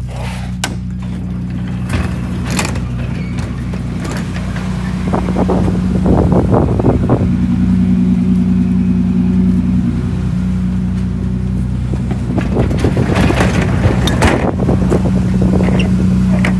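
Lexus SC300's 2JZ-GE inline-six running steadily at idle, soon after a cold start. Knocks and scrapes come from handling nearby, near the start and again from about 13 seconds in.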